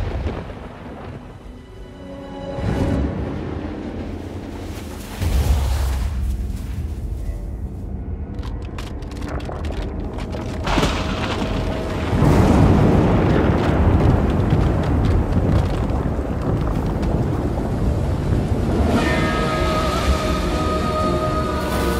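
Dramatic film score over deep booming rumbles. A boom comes at the start, a heavy rumble sets in about five seconds in, and a loud rumbling swell builds from about twelve seconds on.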